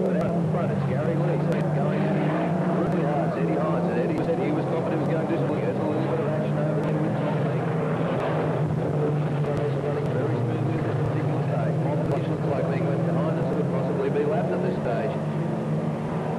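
Engines of a pack of saloon race cars running together at racing speed: a steady drone of many overlapping engine notes.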